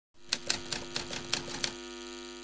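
Typewriter-like sound effect for a section title card: a quick run of about a dozen clacks, several a second, over a low sustained chord that rings on and fades after the clacks stop.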